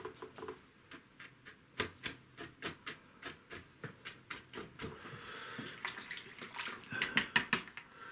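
Paintbrush dabbing and flicking acrylic paint onto gessoed paper, laying in weedy foreground marks: a quick irregular run of sharp little taps with some brushing scrapes, the taps coming thickest near the end.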